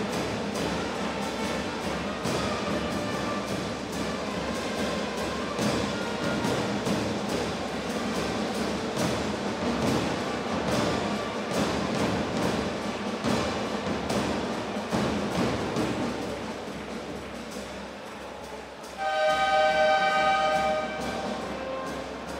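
Music playing over an arena's sound system during a basketball timeout. About 19 seconds in, the game buzzer horn sounds one steady blast of about two seconds, signalling the end of the timeout.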